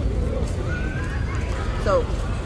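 Human voices: a high vocal sound that rises slowly through the middle, then a quick steep swoop near the end, over a steady low rumble of wind on the microphone.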